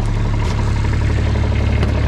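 A vehicle engine running: a steady low hum under loud, even rushing noise.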